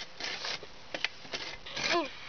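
Small hand saw rasping against a thin pine trunk in a few short, uneven strokes, the cut going hard. A child's voice briefly near the end.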